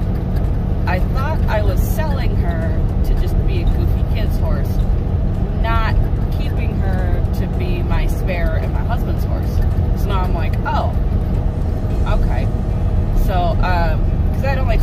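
Steady engine and road rumble of a vehicle being driven, heard from inside the cab, with a person's voice talking intermittently over it.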